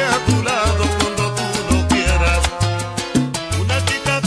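Recorded salsa music: a dance band with a repeating bass line and crisp percussion strokes, playing at a steady, lively tempo.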